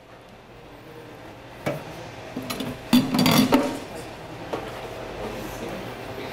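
Metal clinks and knocks of a beer-line cleaning hose and its fittings being handled against a stainless-steel draft bench, a few sharp knocks between about two and four seconds in.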